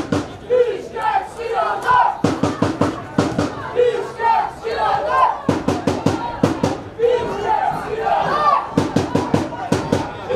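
Football supporters beating a drum in quick runs of strokes, several a second in short groups, with voices chanting and shouting over it.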